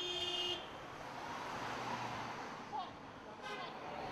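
A Volkswagen Crafter police van drives past close by, its engine and tyres making a steady rushing noise that fades after about three seconds. It opens with a short, steady buzzing tone lasting about half a second, like a horn blip. Faint voices can be heard behind it.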